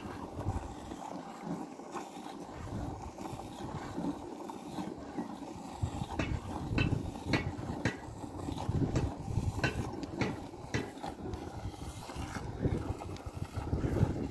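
Hand milking a cow into a plastic bucket: streams of milk squirting from the teats into the pail. From about six seconds in, the squirts come in a rhythm of roughly two a second, over a low rumble.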